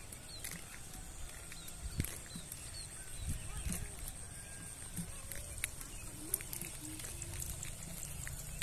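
Rural outdoor ambience beside rice paddies: a steady high-pitched drone, scattered short chirps and clicks, and a low rumble under it.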